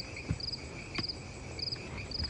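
Crickets chirping in a steady rhythm, about two short trilled chirps a second, over a faint steady high hum.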